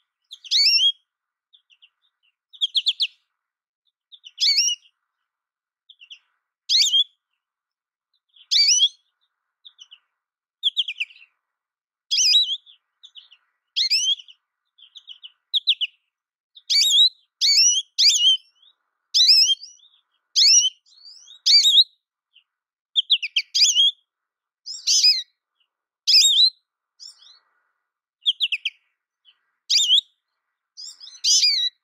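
American goldfinch calling: short, high chirping notes, every couple of seconds at first and more often in the second half.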